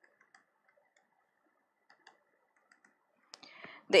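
A few faint, scattered clicks of a stylus tapping a tablet screen while drawing, then a breath and a woman's voice starting to speak near the end.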